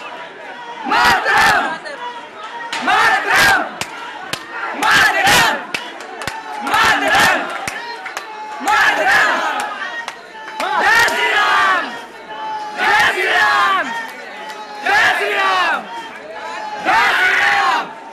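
A crowd of men chanting a slogan in unison, loud shouted bursts about every two seconds.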